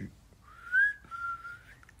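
A person whistling two short notes: a rising slide, then a slightly lower held note.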